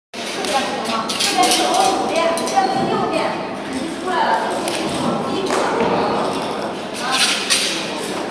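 People talking in a large, echoing hall, with scattered taps and thuds on and off.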